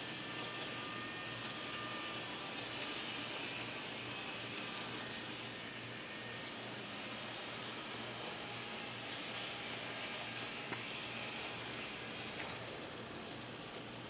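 Faint, steady running of Bachmann N-gauge Peter Witt model streetcars: small motors whirring and wheels running on the track, with a couple of light clicks in the last few seconds.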